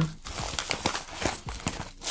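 Small plastic zip bags and paper packaging being handled: irregular crinkling with light clicks.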